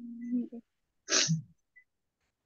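A person's voice: a drawn-out hum that ends about half a second in, then a short, sharp burst of breath noise about a second in, like a sneeze, falling in pitch as it fades.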